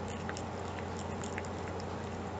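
A cat chewing and nibbling at a piece of banana bread held in a hand: faint, scattered small clicks over a steady low hum.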